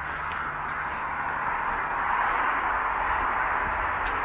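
A steady rushing noise with no clear strokes or pitch, swelling slightly around the middle.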